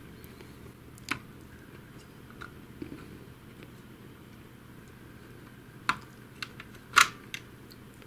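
Sparse light clicks and taps of small plastic printer parts (gears, axle and gearbox housing) being handled and fitted by hand, the sharpest about a second in and again near seven seconds, over a low steady background.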